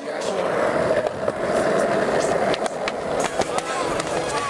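Skateboard wheels rolling, a steady rolling noise with a few sharp clicks along the way.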